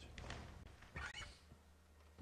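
A faint, short laugh about a second in, over a quiet steady low hum.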